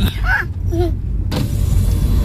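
Steady low rumble inside a car's cabin, with a brief high-pitched voice about half a second in and a sudden rush of outside hiss just over a second in.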